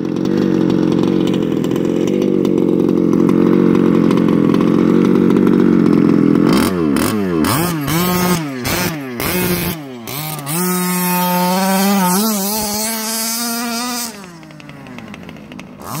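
Large-scale petrol RC truck's small two-stroke engine, running at high revs for the first six or so seconds. Then the throttle is blipped in several quick rises and falls, followed by a longer held rev that drops away near the end.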